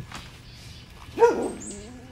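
One short, loud, pitched bark-like animal call about a second in, followed by a thinner call that rises in pitch.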